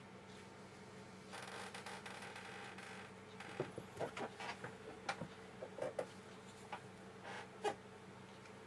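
Flat watercolour brush drawn across paper, a soft scratchy hiss lasting a little under two seconds, followed by scattered light clicks and knocks as the brush is handled. A faint steady hum runs underneath.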